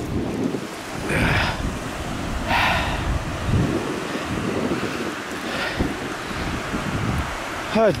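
A few footsteps crunching through dry fallen leaves, spaced a second or more apart, over low wind rumble on the microphone.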